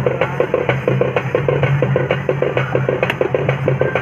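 Music dominated by fast, even drumming, several beats a second, over a steady low hum.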